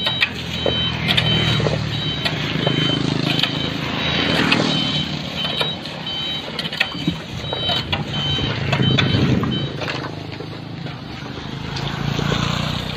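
A dump truck's reversing alarm beeps at an even pace over its idling diesel engine, and the beeping stops about two-thirds of the way through. Shovels scrape and knock on wet asphalt and gravel.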